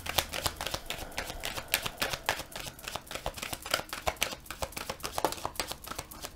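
A tarot deck being shuffled by hand, the cards slapping and riffling against each other in a fast, irregular run of small clicks.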